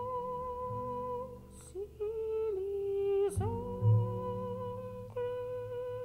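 Slow passage by a jazz chamber ensemble of voices, reeds, violin, double bass, piano and percussion: long held notes with a slight waver. A second line slides in about two seconds in and breaks off with a short downward glide a second later. Low sustained notes then come in strongly.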